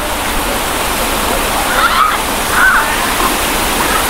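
A steady, loud rushing hiss with no clear source, with faint distant voices briefly about halfway through.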